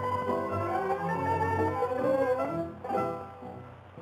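Instrumental introduction of a 1937 Neapolitan song recording: violins carry the melody over plucked-string accompaniment, with the dull, narrow sound of an old record transfer. The music softens after about three seconds, just before the singer comes in.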